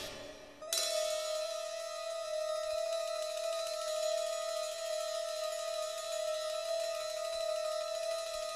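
Experimental rock ensemble music: a loud passage dies away at the start, and after a brief lull a single high note is held steadily over a faint shimmer.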